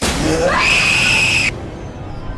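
A person's scream that rises sharply in pitch, holds a high note and cuts off abruptly after about a second and a half. A lower, steady sound carries on beneath it after the cut.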